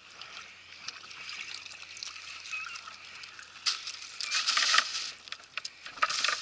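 Seawater splashing and trickling as a mesh trap is handled at the water's edge, with small knocks. The splashing grows louder from a little before four seconds in.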